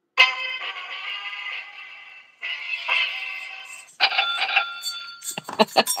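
A played-back chime sound effect: three ringing, bell-like notes about two seconds apart, each fading away.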